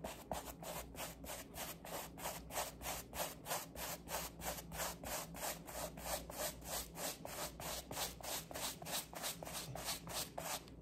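Stiff suede brush scrubbing a cleaner-soaked suede shoe in quick, even back-and-forth strokes, about four a second.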